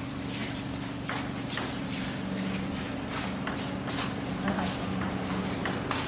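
Table tennis rally: a celluloid ball clicking back and forth off the bats and the table, a sharp click about every half second, some with a short high ping. A low steady hum runs underneath.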